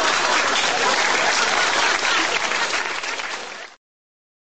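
Audience applause, a little quieter in the last second, cutting off abruptly just before the end.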